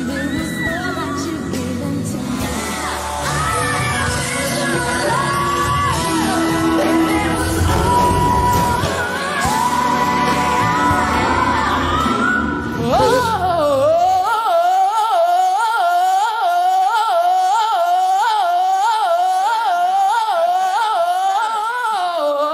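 A woman singing a pop ballad with band accompaniment. About 13 seconds in, the backing falls away and her voice carries on alone in a fast, wavering run high in her range.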